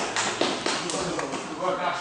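People's voices talking and calling out in a large room, with a few short taps in the first half-second or so.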